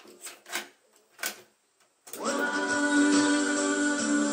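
A few clicks from the Matsui hi-fi's cassette deck controls, then, about two seconds in, music from a cassette tape starts playing through the system's speakers with steady held notes.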